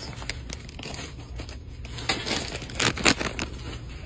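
Plastic snack bags crinkling as they are handled and swapped, an irregular run of rustles and crackles that gets busiest in the second half.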